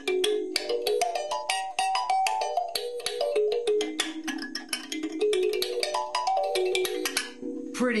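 Box-shaped wooden kalimba (thumb piano) played with the thumbs: a quick stream of plucked metal tines, each note starting with a small click and ringing on, in runs that climb and fall in pitch several times.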